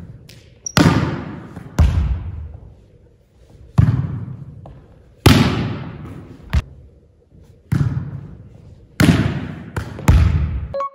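A volleyball struck back and forth by two players: a series of sharp hand-and-forearm smacks on the ball, about one every second or so, each ringing out in a long echo around the gymnasium hall.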